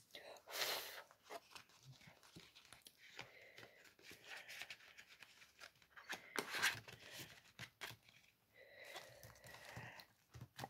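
Faint rustling and crinkling of clear plastic binder pouches and a laminated sticker sheet being handled, in short scattered crackles. The louder crinkles come about half a second in and again about six and a half seconds in.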